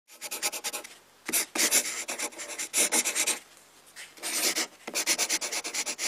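Chalk drawing on a rough surface: rapid scratchy strokes in three runs, pausing about a second in and again around three and a half seconds.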